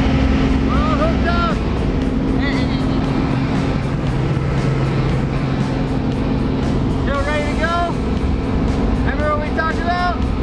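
Steady drone of a small jump plane's engine and propeller heard inside the cabin during the climb, with short bursts of voices over it about a second in and again in the last three seconds.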